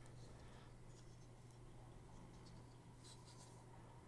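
Near silence: faint scratchy rustles of fingers handling a small model starship, in two short spells, over a steady low hum.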